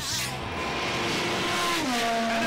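Race car engine at high revs passing by: a steady high engine note that drops in pitch near the end as the car goes past.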